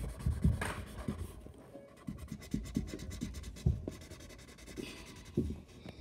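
Felt-tip marker scratching over cardboard in quick, irregular strokes as checkerboard squares are coloured in, with a few soft thumps.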